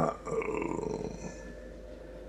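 A man's low, throaty vocal sound, like a drawn-out grunt, for about the first second as he pauses mid-sentence, then quiet room tone with a steady low hum.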